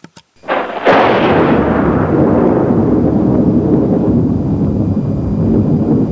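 Two faint clicks, then a loud boom a little under a second in that trails into a long, deep rumble, its higher part slowly fading: a thunder-like boom sound effect.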